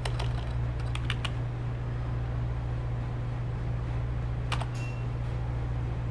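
Computer keyboard keystrokes: a few quick key clicks near the start, a couple more about a second in, and a single one at about four and a half seconds, as a terminal command is finished and entered. A steady low hum runs underneath.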